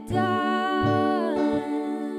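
Music: a female voice humming a long, wavering wordless melody, with a few soft plucked string notes beneath.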